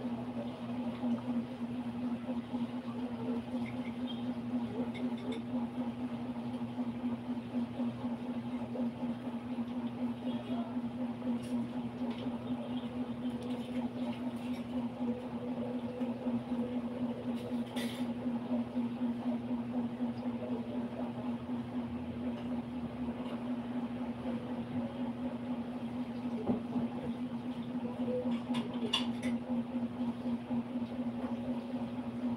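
A steady low hum, with faint rustles and small clicks of fabric being handled during hand-sewing.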